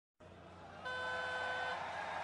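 Weightlifting platform's 'down' signal: one steady electronic beep, a little under a second long, starting about a second in. It sounds after the lifter holds the barbell overhead and tells him to lower it. Under it there is a faint low hum of arena noise.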